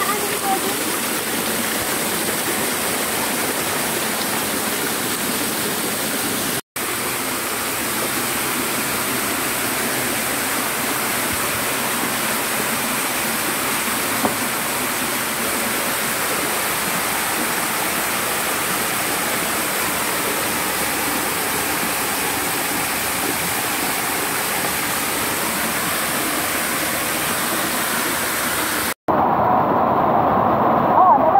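Steady rush of flowing stream water, broken twice by a very short dropout.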